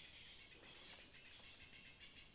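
Near silence: faint forest background with a steady, high insect hum.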